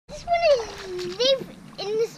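A young child's high-pitched vocal calls: one long falling call, then two shorter ones that rise and fall.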